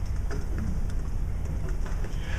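Steady low hum with faint scattered crackles and ticks: the room tone of a lecture-hall recording.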